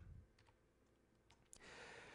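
Near silence broken by a few faint, short computer clicks, then a faint intake of breath near the end.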